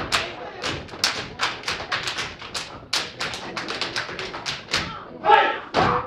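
Step team stepping: feet stomping on the floor with hand claps and body slaps in a fast, even rhythm, a sharp strike about every quarter second. A voice calls out near the end.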